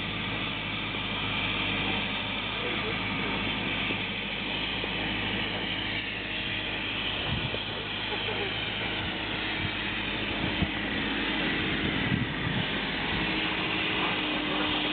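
Steady low engine drone with a hiss over it, from locomotives standing at a railway station, with faint voices in the background.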